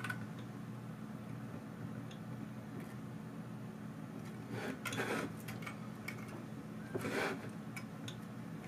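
Faint handling noises as a VGA monitor cable is plugged into a graphics card's port: a few soft clicks, then two brief rustles about five and seven seconds in, over a low steady hum.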